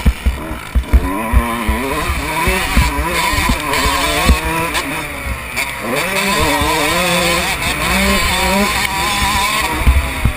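Motocross bike engine revving up and down as it is ridden hard around a dirt track, its pitch dropping off about six seconds in and then climbing again. Low thumps and wind rumble hit the on-board microphone throughout, heaviest in the first second or two.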